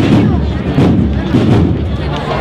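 Drums of a cornet-and-drum band beating a string of sharp strokes, over crowd chatter.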